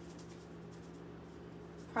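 Salt shaken from a shaker into a cupped hand: faint, soft ticks of grains over a steady low hum of room tone.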